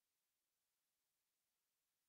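Near silence: only faint steady hiss after the music has ended.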